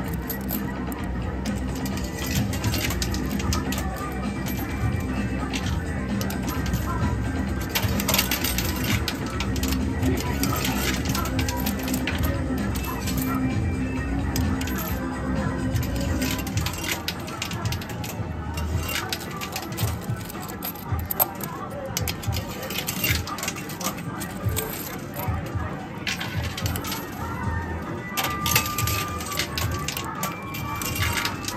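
2p coins clinking and clattering on a coin pusher machine, in repeated clusters of sharp clicks, over arcade music and background voices.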